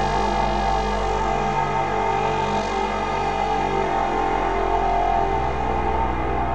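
Slowly evolving dark ambient synth drone from a VCV Rack software modular patch: the Geodesics Dark Energy complex oscillator with FM and ring modulation, run through the Dawsome Love ambient effect plugin. It is a dense stack of steady sustained tones, and the bass notes shift a little after five seconds in.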